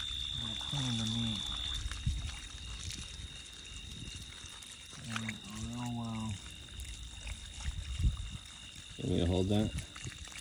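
Water running from a garden hose onto a skinned snake carcass and the dirt beneath it, a steady pouring and splashing as the meat is rinsed.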